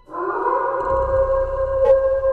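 Wolf howl sound effect: one long howl that starts suddenly, rises in pitch and then holds steady. A low rumble comes in under it about a second in, and there is a brief click near the end.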